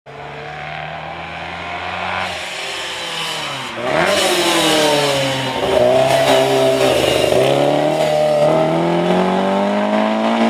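Lancia 037 rally car's supercharged four-cylinder engine pulling hard up through the gears, its pitch falling at each shift and climbing again. It gets louder as the car passes close, about six seconds in, and revs rise steadily as it drives away.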